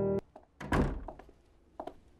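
Sustained piano background music cuts off just after the start; about three quarters of a second in a door gives a single heavy thud, followed by a couple of light footsteps.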